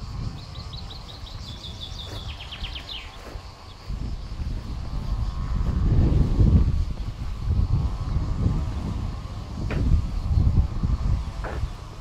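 Wind gusting on the microphone, swelling and falling from about four seconds in, over a faint steady insect drone. A bird gives a quick run of high chirps in the first three seconds.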